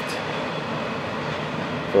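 Freight train cars rolling past: a steady noise of steel wheels on rail as double-stack container well cars go by.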